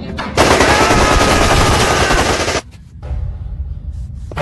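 A long burst of automatic gunfire: about two seconds of rapid continuous shots, starting just after the beginning and cutting off suddenly past the middle.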